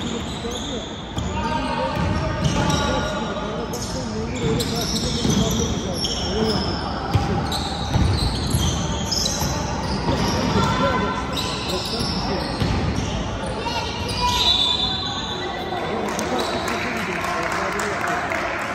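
Basketball dribbled and bounced on a hardwood gym floor, the bounces echoing in a large hall, with voices calling out over it.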